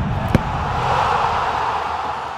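Logo sting sound effect: a sharp hit about a third of a second in, over a low rumble, followed by a swelling hiss like a whoosh.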